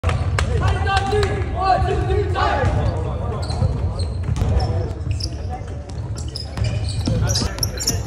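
Basketballs bouncing on a wooden gym court, a scatter of irregular thuds, under indistinct voices talking.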